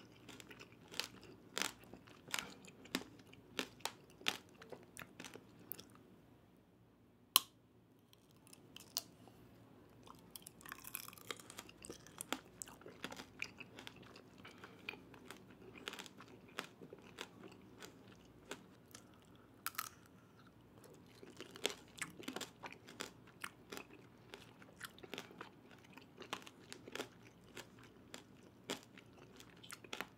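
Close-miked chewing of tanghulu: the hard, glassy sugar coating cracks and crunches between the teeth in many sharp crunches, with softer, wetter chewing of the fruit in between. One loud crack about seven seconds in.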